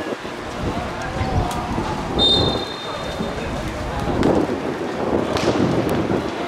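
A referee's whistle gives one short blast of about a second, a steady high tone. Players' voices and a rumbling background run underneath, with a sharp click near the end.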